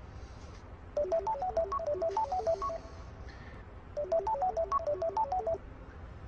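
Mobile phone ringing with a melodic ringtone: a quick run of short notes that plays twice, about a second in and again about four seconds in.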